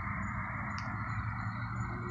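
Steady outdoor background noise: a low hum under an even hiss, with one faint click a little under halfway through.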